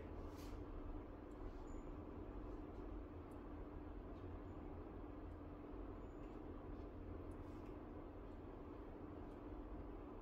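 Quiet room tone: a steady low hum over faint background noise.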